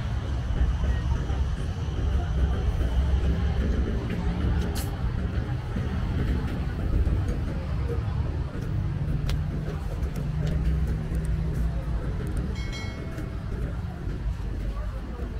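City street sounds: motor traffic running past, with people's voices mixed in. A brief high-pitched tone sounds near the end.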